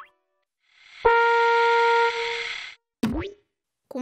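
Cartoon sound effects: a held pitched tone with a hissy shimmer starting sharply about a second in and fading after about a second and a half, then a short swooping effect that dips in pitch and rises again.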